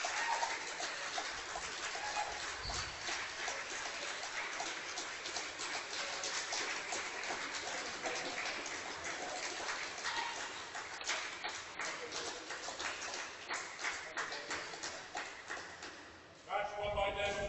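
Applause from a small crowd of spectators, a dense patter of hand claps with a few voices mixed in, fading toward the end.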